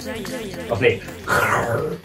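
Short wordless vocal sounds, several pitched calls sliding up and down.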